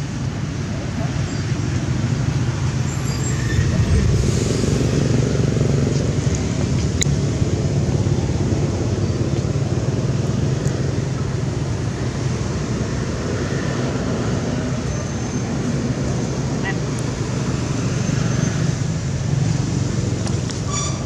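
Steady low rumble of outdoor background noise, with indistinct voices.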